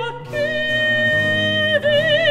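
Mezzo-soprano singing a Baroque aria, holding one long steady note that breaks off briefly near the end before she goes on with vibrato. Harpsichord and violone accompany underneath.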